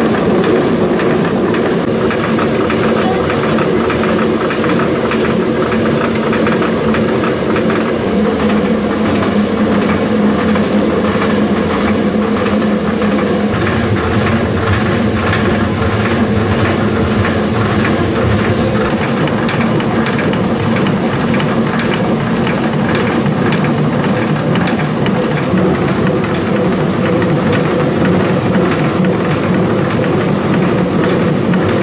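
Water-powered millstones grinding maize: a steady mechanical drone with a fast, even clatter running through it.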